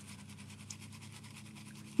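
Faint, rapid scratching of a small paint brush's stiff bristles scrubbing dark blue acrylic paint through a stencil onto the sign's surface.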